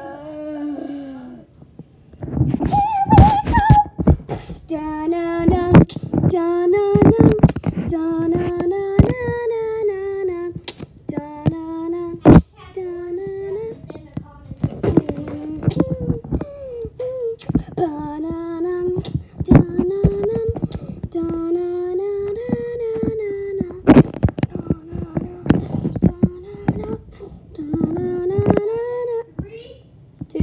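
A child's voice singing a wordless tune in short, repeated rising-and-falling phrases, mixed with frequent sharp knocks and thumps.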